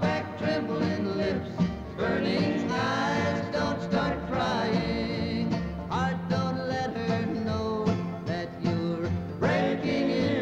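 Country song with a bluegrass band: acoustic guitars, mandolin, banjo and bass playing steadily, with sung vocal lines coming in and out over them.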